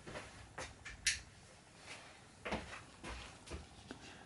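Gloved hands handling raw prawns in a stainless steel bowl: a few faint, short rustles and clicks, the sharpest about a second in.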